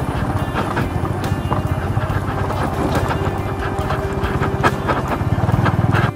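Motorcycle engine running at low revs with a rapid, even thumping, the bike jolting over a rocky gravel track with scattered clicks and knocks of stones.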